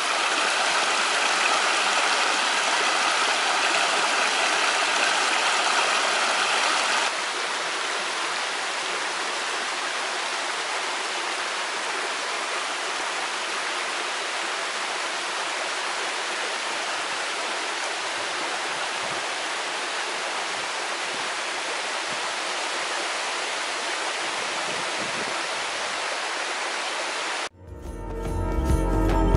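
Shallow stream running over stones and small cascades, a steady rush of water. About seven seconds in it cuts suddenly to a quieter, softer stretch of flow.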